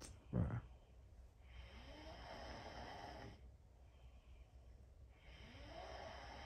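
A sleeping person snoring in slow, regular breaths, one snore about every three and a half seconds, with a short louder burst about half a second in.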